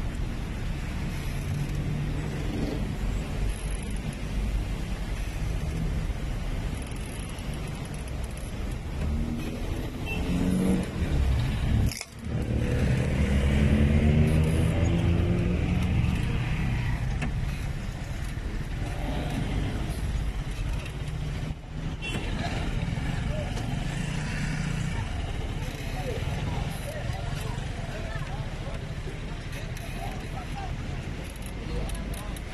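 Street traffic: car engines running close by in slow traffic, loudest just after a short break about twelve seconds in, with people's voices in the background.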